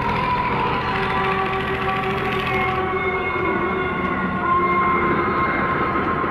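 Loud, steady din of running fairground rides: a constant low hum with several long, drawn-out whining tones that drift slightly in pitch.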